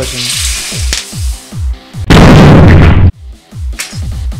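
A metal-can capacitor bursting with 220 V mains applied across it: one very loud blast about two seconds in, about a second of noise that cuts off suddenly. Electronic music with a steady beat plays underneath.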